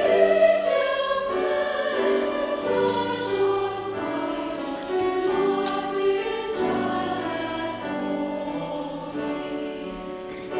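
Mixed choir of men's and women's voices singing in harmony, holding long notes that shift together every second or so.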